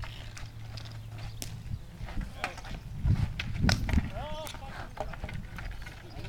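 Street hockey sticks clacking against the ball and the asphalt in scattered sharp knocks, with a player's shout about four seconds in.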